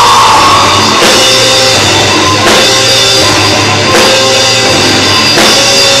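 Rock band playing live: electric guitars and drum kit, loud, with heavy accented hits about every second and a half.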